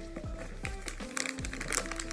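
Background music with a drum beat and held synth tones, over the crinkle of plastic dog food-topper pouches being handled.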